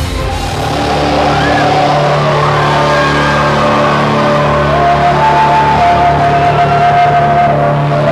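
Live rock band music: a held, slowly moving melodic line over a steady bass note, without clear drum hits.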